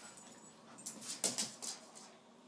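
A Cavachon and a Yorkshire terrier play-fighting, with a quick run of short, breathy huffs and scuffles about a second in.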